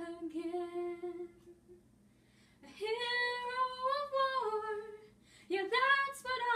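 A woman singing a ballad unaccompanied: a held note trails off, a short pause follows, then a long sustained note dips in pitch at its end, and singing starts again near the end.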